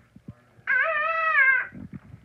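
A single high, drawn-out vocal call lasting about a second, its pitch rising slightly and then falling away.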